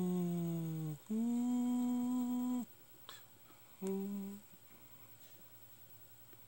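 A person humming three held notes: a long note sliding slightly down, a longer steady note a little higher, and a short note about four seconds in.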